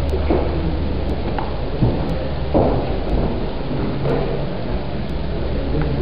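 Steady low hum and hiss of a lecture hall's room noise, picked up by the recording microphone, with a few faint knocks.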